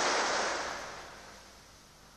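Recorded surf sound effect: a wash of breaking waves that swells and then fades away over about a second and a half, closing out the song.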